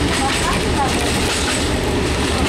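A diesel railcar running along the line, heard from inside: a steady rumble of the engine and the wheels on the track.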